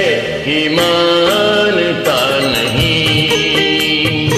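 Bollywood film-song karaoke backing track playing an instrumental passage: a held, stepping melody line over a full accompaniment.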